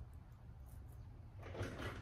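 Quiet room with a steady low hum and faint rustling of a small strip of lead tape being peeled and handled by hand. The rustling grows a little louder near the end.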